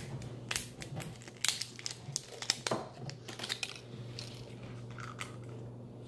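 Small clicks, crackles and crinkling of fingers working the cap of a one-ounce bottle of beard oil open, busiest in the first three and a half seconds and then sparser.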